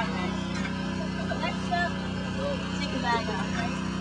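Indistinct voices of several people talking in the background over a steady low hum.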